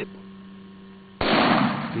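A single gunshot about a second in, sudden and loud with a short fading tail, fired at a feral hog and hitting it.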